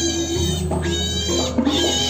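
A pig squealing in repeated high, wavering cries, three in quick succession, over Balinese gamelan music. It is the pig being offered in a nyambleh sacrifice.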